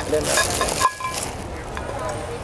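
Plastic bag and newspaper wrapping crinkling and rustling as the wrapped potted plants are handled inside the bag, loudest in the first second, with faint voices underneath.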